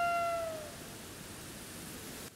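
Background music: one long held note that bends slightly downward and fades out about half a second in, leaving a soft steady hiss.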